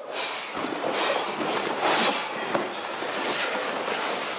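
A karate class training together: a continuous rustle of many cotton uniforms swishing with kicks and punches, with scattered soft slaps and thuds of bare feet on the mats.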